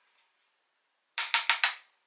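Four quick, sharp taps of a blush brush against a plastic makeup palette, starting about a second in, the first one lighter.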